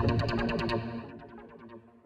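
Background music with a distorted, effects-laden guitar playing fast repeated notes. It fades out and stops shortly before the end.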